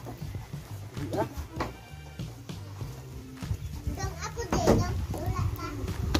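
Background music with low steady notes, under the voices of people and children talking and calling.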